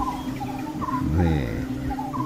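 Drama background sound effects: short chirping calls repeating every few tenths of a second over a steady low drone, with a brief voice-like murmur about a second in.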